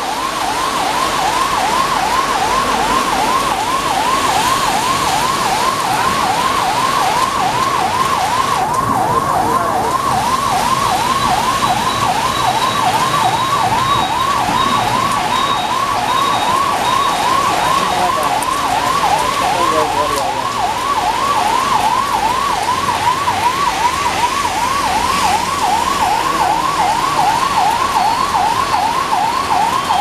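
A siren-like tone warbling up and down steadily, about twice a second, over a constant hiss of heavy rain and running water.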